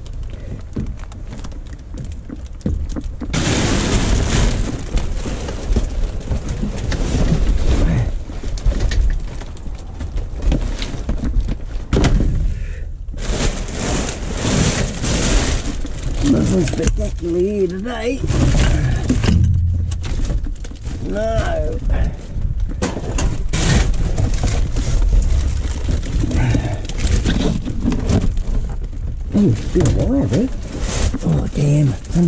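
Hands rummaging through rubbish in a dumpster: plastic bags rustling and crinkling while sheets of plasterboard and cardboard shift, knock and clatter against each other and the bin.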